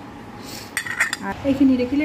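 A steel spoon scooping khichdi and clinking against a ceramic plate, with a quick cluster of clinks a little under a second in.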